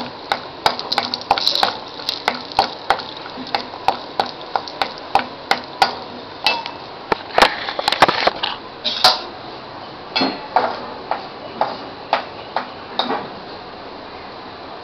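A metal spoon stirring in a kadai, knocking and scraping against the pan irregularly about twice a second, over a faint sizzle of cashews frying in ghee. The knocking dies away near the end.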